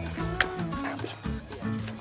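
Background music, with one sharp crack from a pneumatic coil nailer firing a nail about half a second in, toenailing a block into the deck framing.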